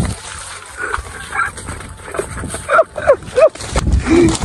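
About three short, high yelping calls in quick succession in the second half, over rustling and handling noise as the camera moves through the field.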